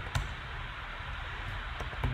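A computer keyboard key clicks once shortly after the start, over a steady low hiss and hum, with a couple of faint key clicks near the end.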